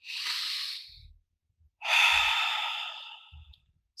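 A man taking a slow, deliberate deep breath close to the microphone. A breath in lasts about a second, then after a short pause comes a longer, louder breath out.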